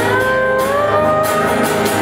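Live folk band playing an instrumental passage: strummed acoustic guitar under a sustained melody line that glides upward in pitch.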